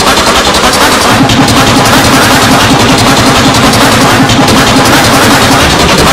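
Heavily distorted, clipped remix audio: a short sample chopped and repeated many times a second over a steady held pitch, kept near full loudness throughout.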